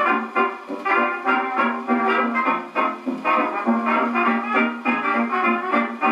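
A dance-band 78 rpm record playing on an HMV Model 32 horn gramophone: an instrumental passage of trumpets and clarinets over a regular beat, thin in the bass as it comes through the acoustic horn.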